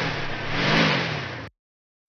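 Stock sound effect of a car engine accelerating as the car drives up, its pitch rising and then falling. It cuts off abruptly about one and a half seconds in.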